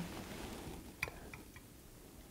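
Quiet room tone with one sharp small tick about a second in and two fainter ticks soon after.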